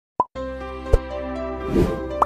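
A short pop sound effect, then background music over a steady low bass drone, with a thud about a second in and a brief rising sweep near the end.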